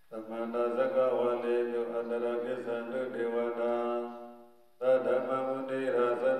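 A Buddhist monk chanting into a microphone in a steady, drawn-out male voice; the phrase fades out about four seconds in, a short breath pause follows, and the chant resumes.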